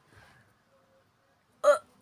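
A cat giving one short, sharp meow near the end.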